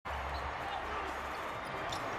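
Court sound of a basketball game in play: the ball bouncing on a hardwood floor over a steady arena hum.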